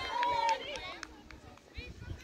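Several voices shouting and calling out over one another, loudest in the first half second and then fading, with a few sharp clicks in between.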